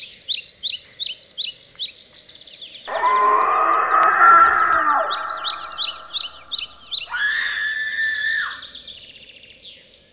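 Birdsong: quick runs of short, high, falling chirps, about five a second. About three seconds in, a louder, lower, drawn-out cry lasts about two seconds. A shorter steady call follows near the end.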